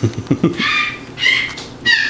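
A few low knocks, then three short, high-pitched squeaky vocal sounds, the last one right at the end.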